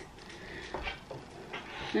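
Faint rustling and handling noises, with a couple of light knocks a little under a second in.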